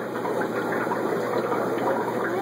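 Steady rush and bubbling of water from the aquarium filtration in a room full of fish tanks, over a low hum.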